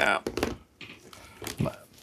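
Faint rustles and scattered light clicks of cord being pulled through a plastic-strut polyhedron model.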